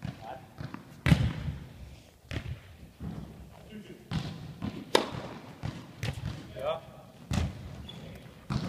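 A basketball thudding against hard surfaces in a large sports hall: four loud, sudden thumps at irregular intervals.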